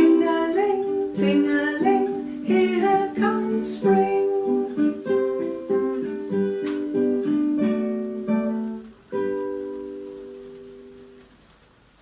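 Acoustic guitar, capoed, played as a song's closing passage: plucked melody notes with a woman's wordless singing over them in the first few seconds. It ends on a final chord about nine seconds in that rings out and slowly fades.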